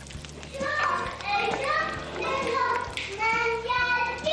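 A young child talking in a high-pitched voice.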